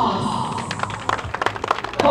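A small group of people clapping, the irregular claps starting about half a second in and growing denser.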